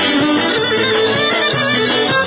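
Pontic lyra (kemenche) playing a lively folk dance tune, with percussion accompanying.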